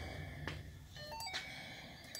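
Handheld scan tool, faint: a button click, then a quick run of short electronic beeps stepping down in pitch as its keys are pressed to bring up the code-reading menu.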